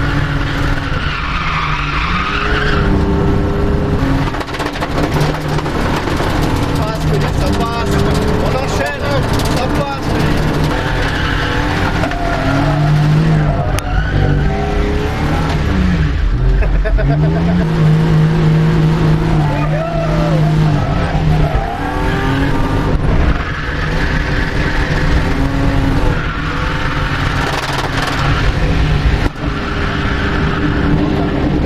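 BMW E36 325i's straight-six engine revving hard, its pitch rising, falling and holding as it drifts, with tyres squealing in bursts near the start, around the middle and near the end, heard from inside the cabin.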